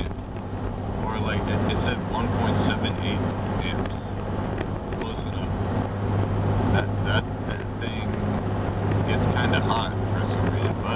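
Steady engine and road drone inside the cabin of a 1998 Jeep Cherokee on the move, a constant low hum under road noise, with a man's voice breaking in now and then.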